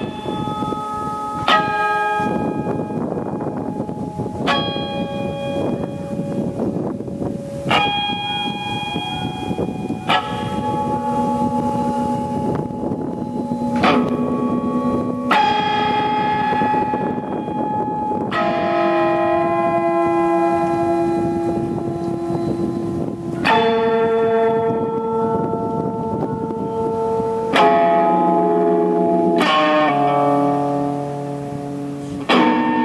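Electric guitar, a Fender Telecaster through a small Fender Champ tube amp, playing slow chords. Each chord is struck sharply and left to ring, and a new one comes every two to four seconds, about a dozen in all.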